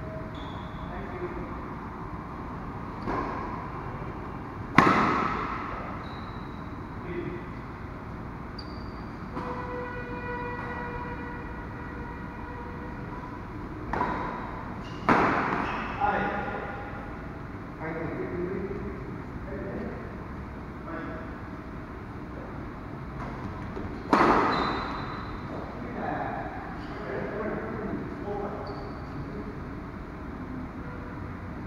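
Badminton rackets striking a shuttlecock during a doubles rally: sharp hits that echo in a large indoor hall, the loudest about five, fifteen and twenty-four seconds in, with lighter hits between.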